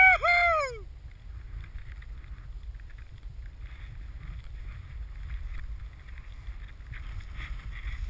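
A high two-syllable whoop, each syllable rising and falling in pitch, right at the start. Then a snowboard sliding through deep powder, with wind on the microphone as a steady low rumble and a hiss growing toward the end.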